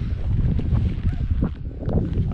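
Wind buffeting an action camera's microphone: a steady low rumble.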